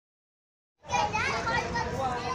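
Dead silence for almost the first second, then lively voices and chatter cut in abruptly and carry on.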